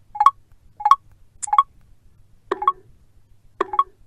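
iPhone VoiceOver sound cues: five short two-note electronic blips, spaced about half a second to a second apart, as one-finger swipes step an adjustable page control. The last two have a deeper tone: this is the 'dın' that signals there is no further page.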